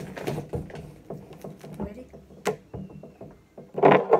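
Small handling noises as a slice of bread is broken apart, with a sharp click about two and a half seconds in and a louder knock near the end, over a steady low background hum.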